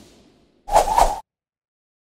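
Whoosh sound effects for an animated logo. An earlier swish fades out over the first half second, and then a brief, loud swish of about half a second comes in just after.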